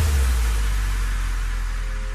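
Background dance music at a break: the drum beat drops out, leaving a held low bass note and a wash of noise that slowly fades.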